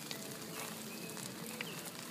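Fish frying in hot oil in a pan: a steady sizzle.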